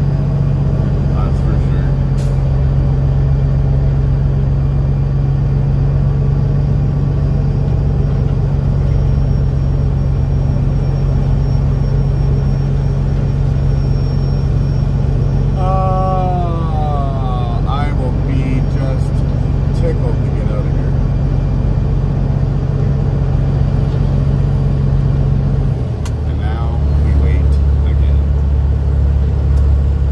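Peterbilt's Caterpillar diesel engine running at a low, steady idle as the truck creeps forward in the lineup, heard from inside the cab. About 26 seconds in, the engine note drops to a deeper hum.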